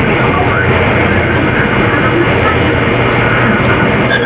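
Loud, steady wash of dense noise with a low hum underneath, no single clear source standing out.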